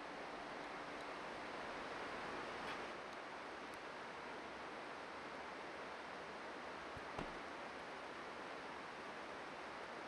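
Faint, steady hiss of outdoor ambient noise, with one short faint click about seven seconds in.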